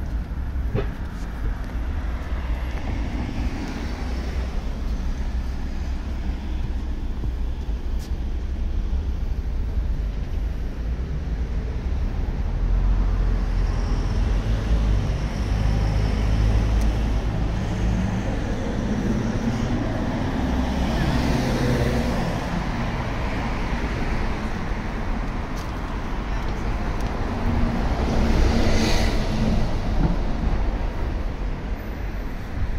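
City street traffic: cars and buses passing on a busy road, a continuous low rumble with louder swells as vehicles go by, around the middle and again near the end.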